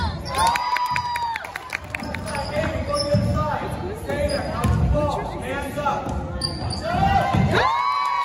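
Basketball game on a hardwood gym floor: sneakers squeaking sharply as players cut and stop, with the ball bouncing on the boards, all echoing in the hall. A long squeak comes near the start and another just before the end.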